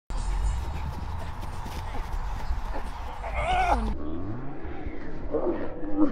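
Wind rumbling on the microphone, with a person's shout rising and falling a little after three seconds in. The rumble cuts off suddenly at about four seconds, and people's voices follow near the end.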